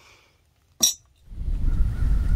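A single sharp clink of a metal spoon against an enamel coffee mug, a little under a second in. A low, steady rumble then comes in for the last part.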